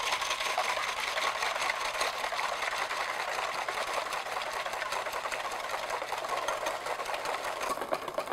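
Wire balloon whisk beating heavy whipping cream by hand in a stainless steel bowl: a rapid, steady clatter of the wires ticking against the metal bowl. The cream is being whipped toward not-quite-stiff peaks.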